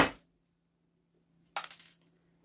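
A brief handling knock right at the start, then a short metallic rattle about one and a half seconds in, as bonsai wire is unwound and pulled off a larch branch.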